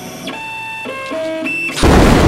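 Stepper motors of a CNC router whining as the axes are jogged, a run of steady pitched tones that jump to a new pitch every few tenths of a second with short rising and falling ramps as the motors speed up and slow down. Near the end a sudden loud burst cuts in.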